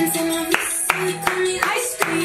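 Hand claps in a steady rhythm, about two to three a second, over pop music.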